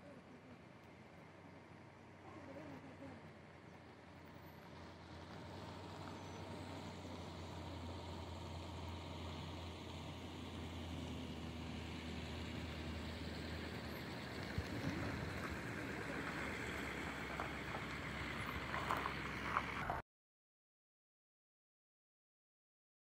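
A vehicle's engine and tyre noise with a low hum, growing steadily louder, with a few sharp clicks in the last seconds before it cuts off suddenly shortly before the end.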